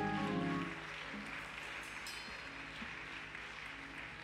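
Background music of held, sustained chords that drop off about a second in, leaving soft scattered notes over a faint even hiss.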